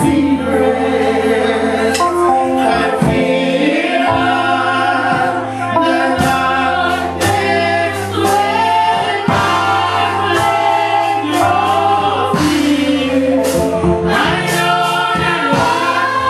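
A junior gospel choir of children and adults singing together, lead voices on handheld microphones, over steady low held notes.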